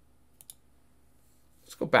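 Two quick clicks about a tenth of a second apart, a computer mouse button being clicked.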